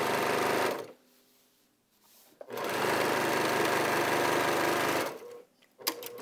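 Baby Lock Accomplish sewing machine stitching at a fast steady rate in two runs, stopping for about a second and a half between them, as a strip is sewn through the quilt top, batting and backing. A few light clicks near the end.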